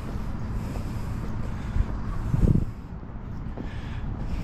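Outdoor street background: a steady low rumble of road traffic and wind buffeting the microphone, with a short louder low gust about two and a half seconds in.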